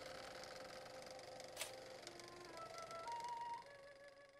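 Faint tail of a logo sting: a fading wash, one soft tick about one and a half seconds in, then a few soft held musical notes one after another that fade away.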